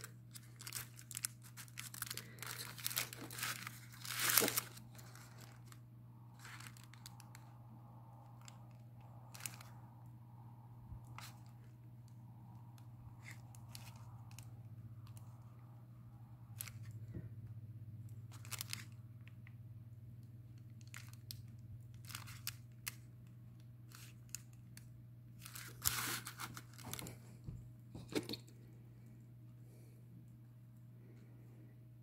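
Faint scratching and rustling of a liner brush painting on a paper art-journal page and of the page being handled, in short clusters in the first few seconds and again near the end, over a steady low hum.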